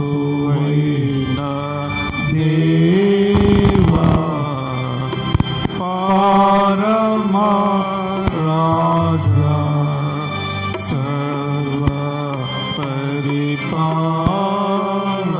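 Slow, chant-like devotional singing: a voice holds long notes that step up and down in pitch, with a few faint clicks.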